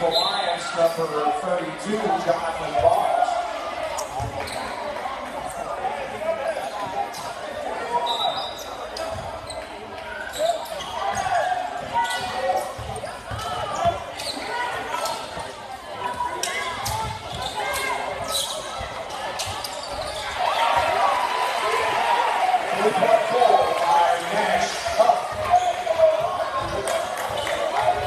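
Basketball bouncing and dribbling on a hardwood gym floor, with sharp impacts throughout, over the steady chatter of a crowd in an echoing gymnasium. The crowd noise grows louder about two-thirds of the way through.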